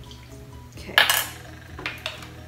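Kitchen utensils knocking against dishes: one sharp clink about halfway through and a smaller one near the end, with faint background music underneath.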